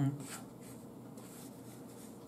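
The end of a hummed "mm-hmm", then a fork scraping lightly through food on a plate, faint and scratchy, with a couple of brief strokes.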